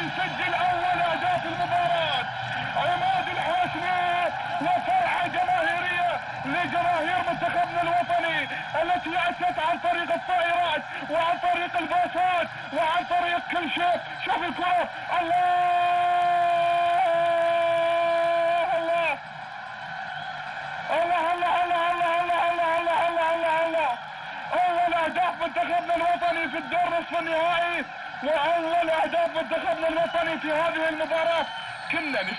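A voice singing or chanting in wavering, ornamented phrases, holding one long steady note about halfway through, followed by a brief break before the phrases resume.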